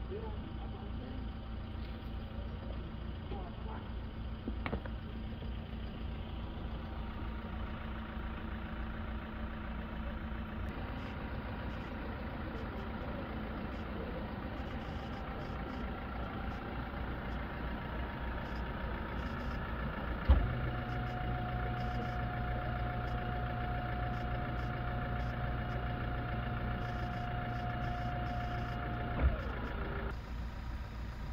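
A vehicle engine idling steadily. About two-thirds of the way in, a sharp thump starts a steady hum that holds for about nine seconds and stops with another thump.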